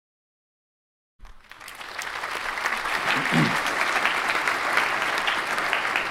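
Audience applauding, cutting in suddenly about a second in and then holding steady, with a brief voice heard partway through.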